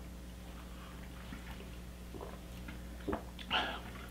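Quiet room with a steady low hum, and a few faint mouth sounds of someone sipping and tasting a drink in the second half, including a small click about three seconds in.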